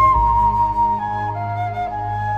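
Instrumental music: a flute plays a slow melody of held notes, stepping down from a high note about a second in, over a sustained low accompaniment.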